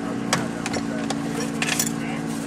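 An engine idling steadily, with a series of sharp metallic clicks and rattles from a racing safety harness being handled and buckled, thickest near the end.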